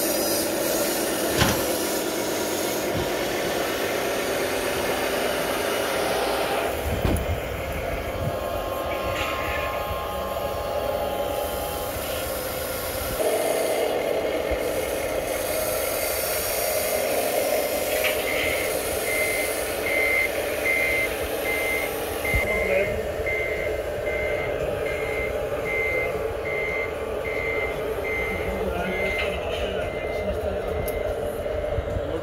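Reversing beeper of an RC scale construction model, beeping evenly a little more than once a second from about two-thirds of the way in. Underneath runs a steady whir of the models' electric motors and hydraulics.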